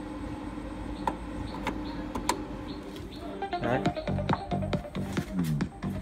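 Steady electrical hum from the speaker system with a few sharp clicks as a cable is plugged in, then music starts playing through the QT Acoustic RX602 column speakers about three and a half seconds in.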